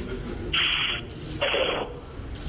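Two bursts of static-like hiss, each about half a second long and about a second apart, each starting and stopping abruptly.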